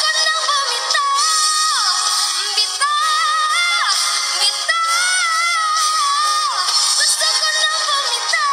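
A woman singing into a microphone, holding long high notes with vibrato, each phrase sliding down in pitch at its end.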